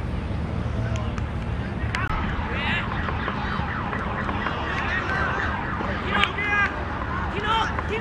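Shouting voices of football players on an open pitch, with several short high calls that rise and fall, over a steady low rumble. A sharp knock sounds about six seconds in.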